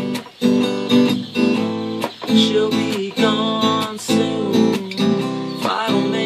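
Acoustic guitar strummed in a steady rhythm, about two chord strokes a second, the chords ringing between strokes.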